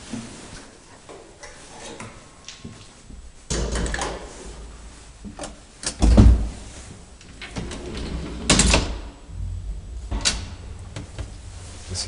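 Elevator doors being opened and shut: a rumbling slide about three and a half seconds in, a heavy bang about six seconds in, then two sharper knocks, followed by a low steady hum.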